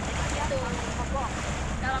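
Wind buffeting the microphone over a steady low rumble from a small wooden motorboat under way on a lake, with water rushing past the hull.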